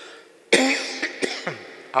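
A man coughing into his hand: a hard cough about half a second in, followed by a second, shorter cough.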